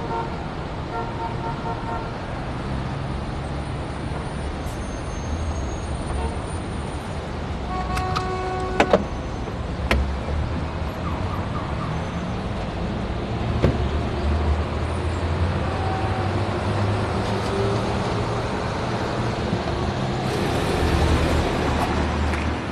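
Car engine and street traffic running steadily. About eight seconds in there is a short horn toot, followed by a few sharp knocks.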